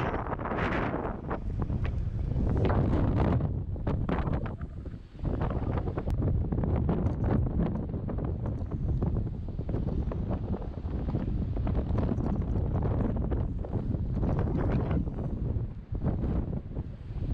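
Wind buffeting the camera microphone, rumbling and gusting unevenly, with a short lull about five seconds in.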